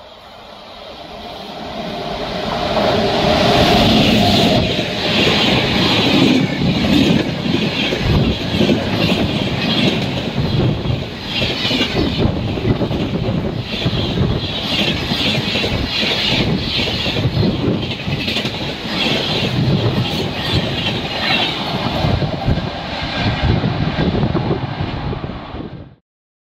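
Indian Railways express train of red coaches approaching, growing louder over the first few seconds, then running past close by with a steady rhythmic clickety-clack of wheels over rail joints and some wheel squeal. The sound cuts off abruptly at the end.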